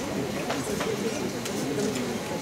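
Indistinct low voices talking, with scattered light clicks.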